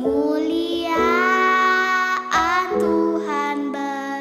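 A young girl singing a Christmas song in Indonesian over soft instrumental backing. She glides up into a long held note, then sings two more sustained notes.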